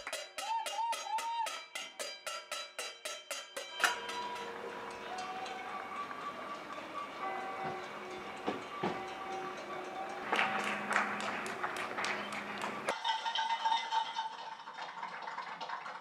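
A pan being banged and hands clapping in a fast, even rhythm of about five strikes a second for the first four seconds. Then comes a fuller wash of clapping and banging from many people, with a louder burst of claps between about ten and thirteen seconds.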